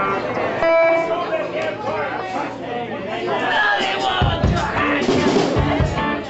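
Band instruments played loosely between songs over crowd chatter: an electric guitar note held about a second in, and a few low notes and thumps near the end.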